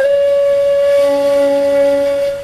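Intro music: a flute holds one long steady note at the end of a descending run, and a lower sustained note joins about a second in.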